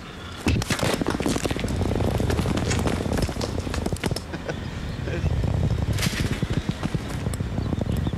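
A heavy ball rolling over asphalt: a steady low rumble peppered with many small clicks and knocks.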